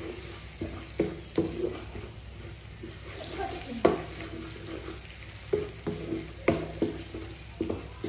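Wooden spatula scraping and knocking against a metal wok as egg is stir-fried, each stroke leaving a short metallic ring, over a steady sizzle of the frying egg. The strokes come irregularly, about one a second.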